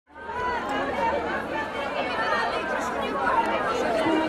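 A crowd of many people talking at once, their voices overlapping into a steady chatter.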